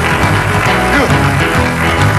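Rockabilly band vamping without drums: an upright double bass plays a driving beat under electric and acoustic guitars.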